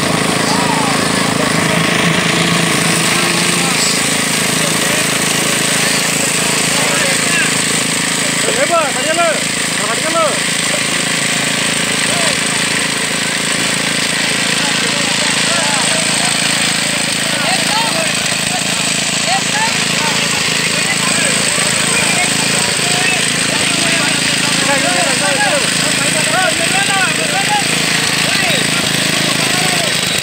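Site machinery engine running steadily during a concrete slab pour, with workers' voices calling out over it.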